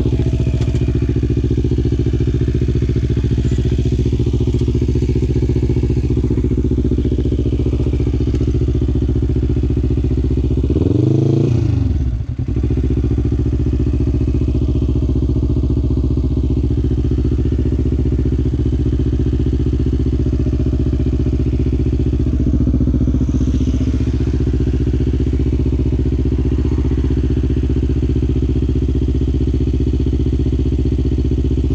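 A quad bike's engine idling steadily, with a short blip of the throttle about eleven seconds in that rises and falls in pitch, and a smaller one later.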